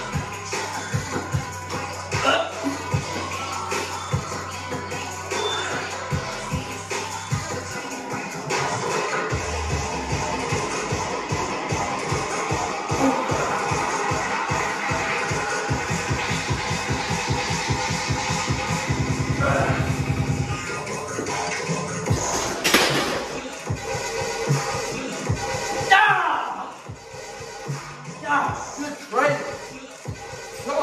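Background music with a steady beat and a vocal line running throughout.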